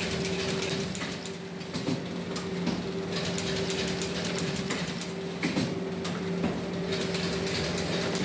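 Automatic notebook binding machine running: a steady hum from its belts, pulleys and rollers, with rapid, irregular clicking and clatter of the mechanism over it.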